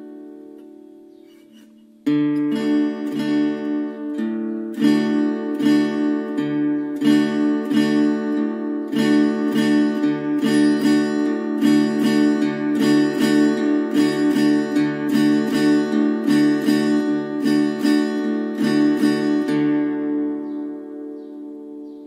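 Acoustic guitar strumming a D major chord in a ranchera pattern: a bass note on the fourth string followed by downstrums of the chord, alternating with a bass note on the fifth string and two downstrums. It starts about two seconds in, keeps a steady rhythm and rings out near the end.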